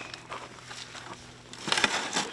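Scraping and crunching as a plaster-jacketed fossil block is shimmied across a wooden pallet by hand, with a quick cluster of louder crunches near the end.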